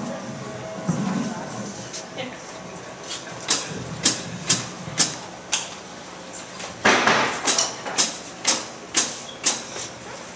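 A steady beat of sharp percussive hits, about two a second, starting a few seconds in, with one longer, fuller hit near the seven-second mark, over low room chatter.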